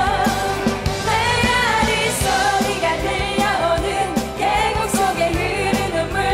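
Women singing a lively Korean pop song into microphones, over a band with a steady drum beat.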